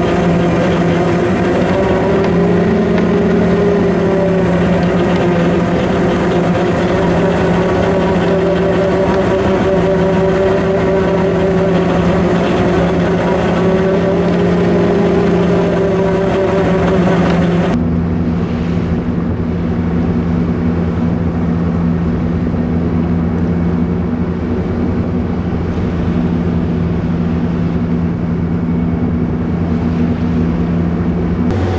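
Steady drone of a fishing trawler's diesel engine and deck machinery, with a held tone that wavers slowly up and down above it. About 18 seconds in, the sound changes abruptly to a duller, lower hum without the hiss.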